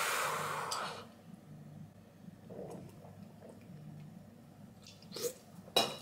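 A long forceful exhale through the mouth, done before downing a shot, fading out over about the first second. Then quiet while the shot is drunk, with two short sharp sounds near the end.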